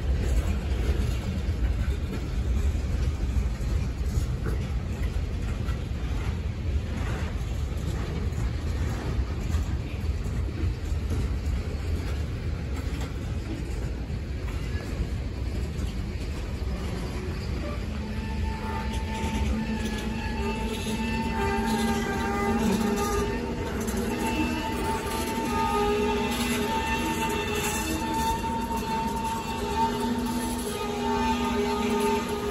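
Tank cars of a slowing freight train rolling past with a steady low rumble of wheels on rail. About two-thirds of the way through, a sustained squeal with several steady overtones joins in and holds to the end, typical of brake shoes dragging on the wheels as the train slows.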